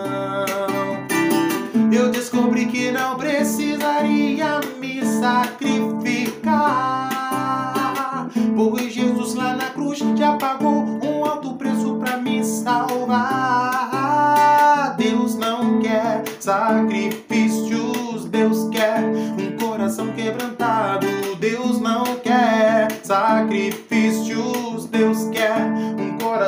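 A man singing a worship song with his own steady strummed acoustic-guitar accompaniment. His voice rises and falls in long held, gliding phrases over the regular strum strokes.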